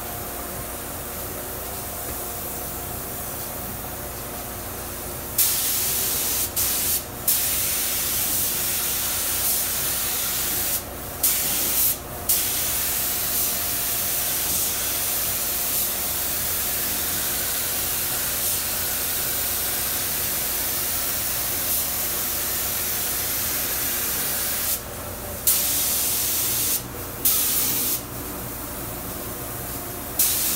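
Gravity-feed compressed-air spray gun spraying black primer onto a steel tailgate. It makes a loud steady hiss that starts about five seconds in, is broken by several brief breaks, and stops near the end. Under it runs a fainter steady hiss with a low hum.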